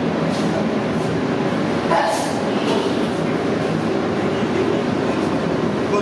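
Steady roar of a busy restaurant kitchen: gas cooking burners and ventilation running, with a few short clatters, the clearest about two seconds in.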